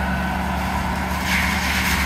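Forest mulcher working along, its engine running with a steady drone.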